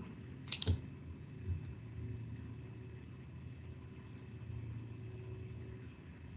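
Two sharp clicks close together about half a second in, then a softer knock, over the steady low hum of an open microphone on a video call.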